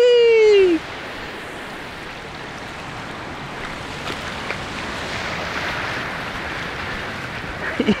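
A man's short falling whoop right at the start, then the steady wash of ocean surf breaking and running up a flat sandy beach, swelling a little midway.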